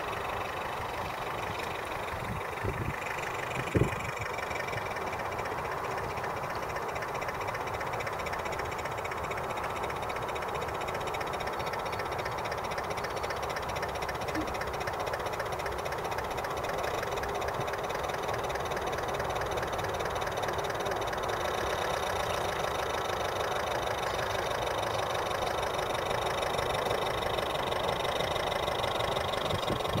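Radio-controlled model lifeboat running steadily under power, with an even, engine-like drone that grows slowly louder as the boat comes closer.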